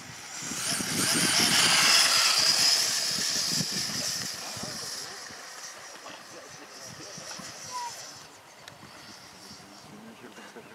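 Radio-controlled model jet's turbine making a high rushing noise as the model rolls across the grass. The noise swells about half a second in, is loudest from about one to three seconds in, then fades away by about eight seconds.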